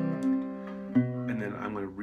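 Metal-bodied resonator guitar: a fingerpicked chord rings, then about a second in a second chord is picked with its bass note stepped down, walking the bass from C toward B under an unchanged C-chord top.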